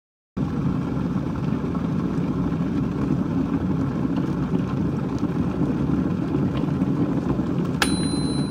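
A steady low rumbling noise holding an even level throughout. Near the end comes a sharp click and a thin, high electronic beep.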